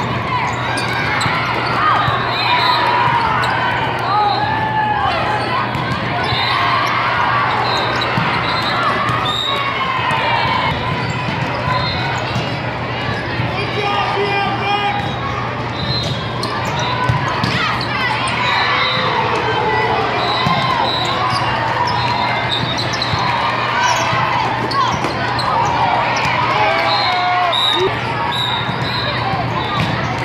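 Busy indoor volleyball hall: many overlapping voices of players and spectators calling out, with scattered ball hits and bounces from the courts, over a steady low hum of the hall.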